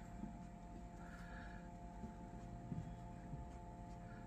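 Quiet room tone with a faint, steady electrical hum.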